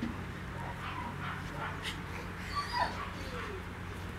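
A wolf-like canine whimpering in rough play, with one soft falling whine about three seconds in.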